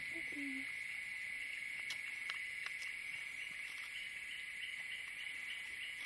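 Steady, high-pitched insect chorus holding one tone, with a few faint clicks around two seconds in.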